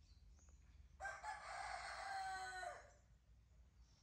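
A rooster crowing once, a single call of about two seconds that drops in pitch at the end.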